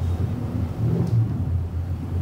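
A steady low rumble, a little louder around the middle, with nothing sudden standing out.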